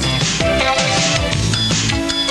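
Background music with a steady beat and held melody notes.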